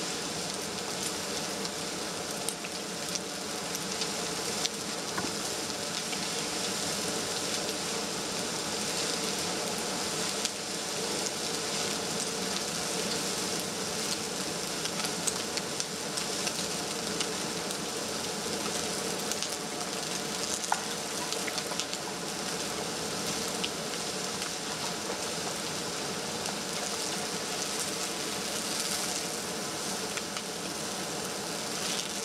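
Wildfire burning through standing conifers: a steady hiss with scattered sharp crackles and pops of burning wood.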